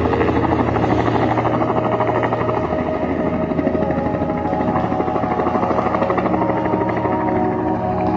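A small helicopter's rotor chopping rapidly and steadily as it hovers just off the ground, with music playing underneath.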